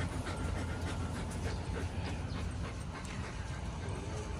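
A dog panting close by, quick steady breaths, over a steady low hum.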